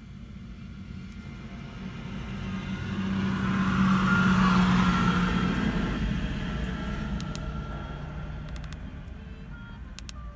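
A road vehicle passing close by, heard from inside a car: a low rumble and rushing noise that swells to its loudest about four to five seconds in, then fades away.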